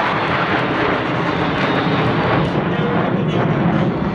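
Twin-turbofan jet engines of a nine-ship formation of MiG-29 fighters flying overhead, a loud, steady jet noise without letup.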